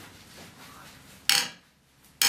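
Tools being handled at a workbench: faint handling noise, then a single sharp metallic clink about a second in.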